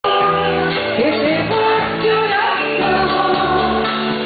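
A woman singing live into a microphone over a band, holding long, sliding notes above steady bass and backing instruments.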